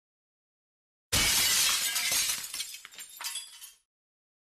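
A sudden loud crash about a second in, with a noisy tail that breaks up into scattered clinks and cuts off sharply just before the end, set between stretches of dead silence like an edited-in sound effect.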